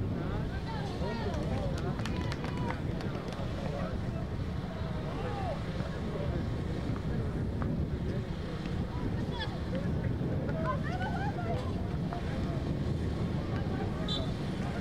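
Live courtside sound of an outdoor 3x3 basketball game: players' scattered shouts and calls over a steady rumble of wind on the microphone and a murmur of onlookers, with a few sharp knocks of the ball on the court.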